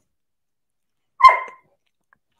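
A single short, loud, pitched yelp from an animal a little after a second in, with silence before it.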